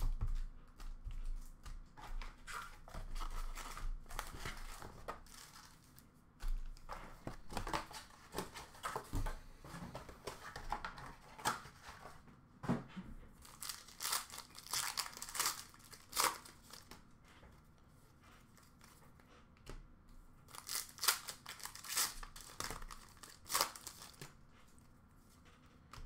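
Trading-card pack wrappers being torn open and crinkled, with cards shuffled and handled: irregular crackles and rustles that quiet down for a few seconds past the middle.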